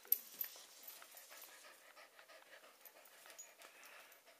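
Puppy panting faintly, with a few small clicks.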